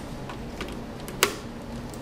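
Small clicks and taps of fingers and a screwdriver working a laptop's LVDS display-cable connector loose from the motherboard, with one sharp click a little past halfway through.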